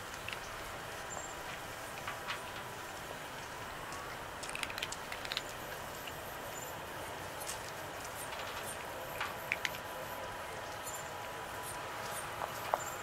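A cat eating dry treats: small crunching clicks of chewing in a couple of short clusters, about four to five seconds in and again around nine seconds, over a steady outdoor hiss.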